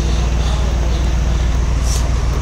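Steady low rumble of idling vehicle engines and road traffic.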